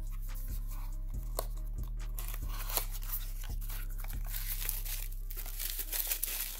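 Bubble wrap and a small cardboard box crinkling and rustling in the hands as a bottle is unpacked, over background music with a steady low beat.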